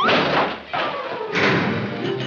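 Cartoon sound effects of a heavy steel safe door being slammed shut: two loud crashing thuds, one right at the start and another about a second and a half in.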